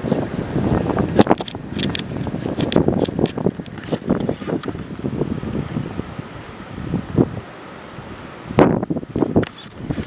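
Footsteps crunching and rustling through dry leaf litter and twigs, irregular and close, with wind buffeting the microphone; a louder crunch about a second in and another near the end.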